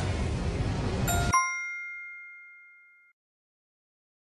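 A steady noisy background that stops abruptly as a bright, bell-like ding chime sounds about a second in. The chime is the quiz's answer-reveal sound effect, and it rings out, fading away over about two seconds.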